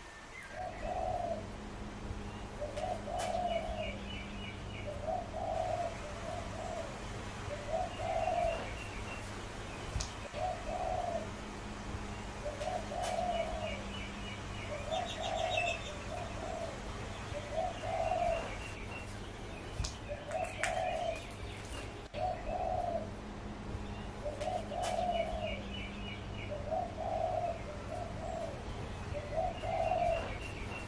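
A dove cooing over and over, a short phrase every couple of seconds, with smaller birds chirping faintly behind it over a steady low hum.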